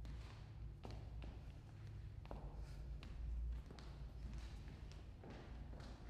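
Scattered taps and light thumps of footsteps and movement on a wooden floor, over a steady low rumble.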